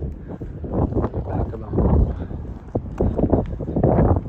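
Footsteps on pavement, several thudding steps in an uneven walking rhythm, with wind buffeting the microphone.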